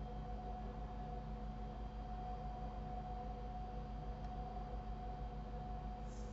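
Steady background hum from the recording setup, with faint constant tones and nothing else changing.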